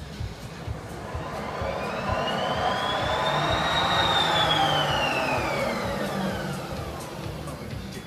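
A whistling tone with overtones that glides smoothly up for about four seconds and then back down, while a rushing noise swells and fades with it, loudest in the middle. Background music runs underneath.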